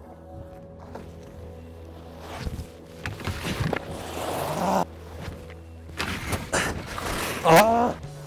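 Skis scraping and hissing over packed snow on the run-in, followed by a few sharp knocks as the skier rides the rail and lands, then a short shout near the end. Background music runs underneath.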